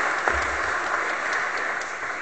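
Audience applauding, a steady patter of clapping that thins out near the end.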